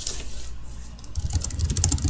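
Rapid typing on a computer keyboard, a quick run of light key clicks starting about a second in, after a brief rustle of handling at the start.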